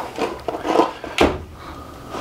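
A cordless jigsaw being handled and lifted in its cardboard box: light rubbing and scraping of the plastic tool body against cardboard, with one sharp knock a little over a second in.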